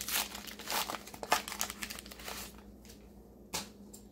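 Foil trading-card booster pack wrapper crinkling as it is torn open by hand, dense crackling for about two and a half seconds, then quieter with one short crackle near the end as the cards are pulled out.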